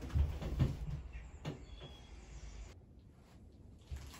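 A few dull thumps and knocks in the first second, then a single sharper click about a second and a half in, with the background hiss cutting off abruptly near the end.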